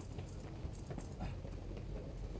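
Faint background of a crowd moving on foot: shuffling footsteps and scattered short clicks over a low steady hum.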